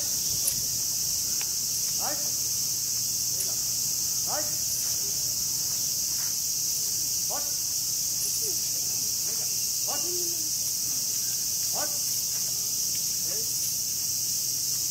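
A chorus of cicadas, a loud steady drone throughout. Short faint rising calls come every two seconds or so beneath it.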